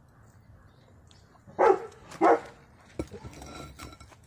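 A dog barks twice, about one and a half and two and a quarter seconds in, a worried bark at the hot metal. A couple of sharp clicks follow near the end.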